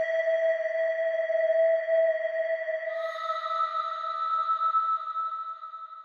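Synthesized drone of a dramatic film score: steady, thin electronic tones with no bass, joined by a second, higher tone about halfway through.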